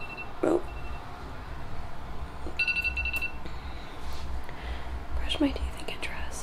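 A short burst of rapid electronic beeping, under a second long, about two and a half seconds in, over a low steady rumble.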